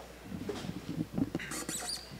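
Paper rustling and small scratchy knocks close to a lectern microphone, a quick irregular run of crackles that grows busier and brighter toward the end.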